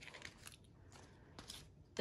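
Faint rustling and crinkling, with a few light ticks, as clear plastic cash envelopes packed with polymer banknotes are handled.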